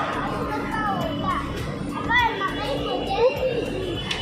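A young child's voice chattering and calling out, with other voices and a steady hum behind it.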